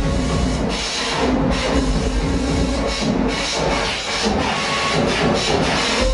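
Harsh, noisy breakcore/speedcore electronic music played loud through a club PA and picked up from the crowd, a dense grinding wash of noise with no steady beat.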